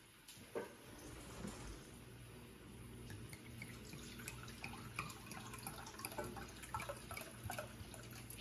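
Red wine being poured from a bottle into a glass measuring cup: a faint trickle of liquid with scattered small ticks.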